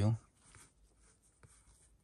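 The end of a spoken word, then faint soft rubbing and a few light clicks of a hand working a computer mouse.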